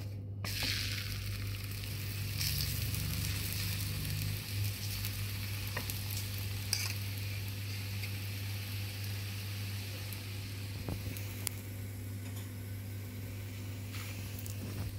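Oiled stuffed radish paratha sizzling on a hot iron tawa. The sizzle jumps up about half a second in, as the flipped, oiled side lands on the pan, then settles into a steady frying hiss with a few light clicks.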